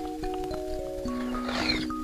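Background music with a simple melody of held notes. About one and a half seconds in, a short wet slurp as jelly drink is sucked from a test tube.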